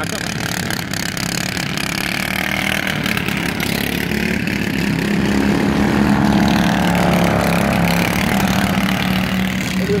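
Ride-on lawn mower engine running steadily, its note swelling and rising slightly about halfway through.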